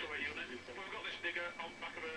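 Speech from a television in the room, heard through the set's speaker with little bass.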